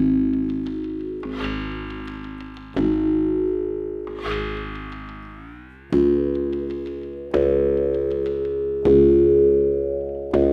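Self-built electronic instrument La Diantenne 2.0 playing chords of several tones over a low bass, a new chord starting sharply about every one and a half seconds and fading slowly. Around the middle one chord slides up in pitch.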